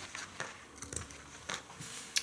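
Scissors cutting through felt: a few short snips and clicks of the blades.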